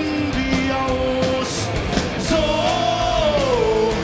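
Live rock band playing: acoustic guitar, electric guitars, bass and drums with singing. In the second half a long held note wavers and then slides down near the end.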